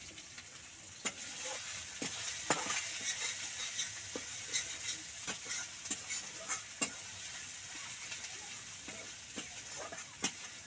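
Oil sizzling in a metal kadhai as garlic fries, with a spatula stirring and scraping the pan in sharp clicks every second or so.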